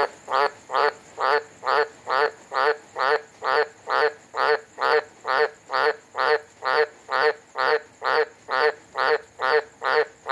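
Australian green tree frog (Litoria caerulea) calling: a loud croak repeated at a steady beat, a little over two calls a second.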